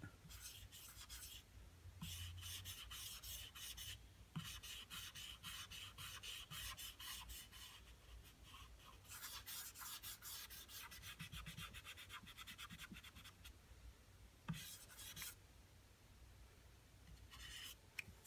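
Faint scratchy rubbing of a Posca paint marker's tip stroked back and forth over a surfboard, blending wet paint, in stretches of strokes with short pauses.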